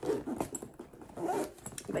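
A sequin mini backpack being handled and zipped, with small clicks and rustles. Two short, whine-like vocal sounds come with it, one at the start and one in the middle.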